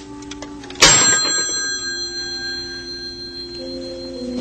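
A telephone handset set down hard on its cradle about a second in: a sharp clack, then a metallic ring from the phone's bell fading over a few seconds, over soft background music.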